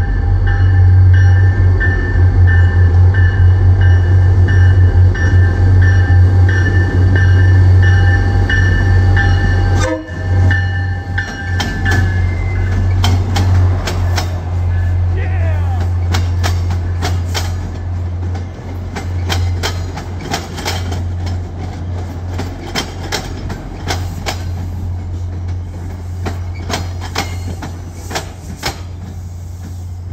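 MBTA F40PH-3C diesel locomotive passing at speed, its engine rumbling loudly while its horn sounds a long chord for about the first twelve seconds, with a short break near ten seconds. The coaches then run by with quick clicking of wheels over the rail joints, slowly fading.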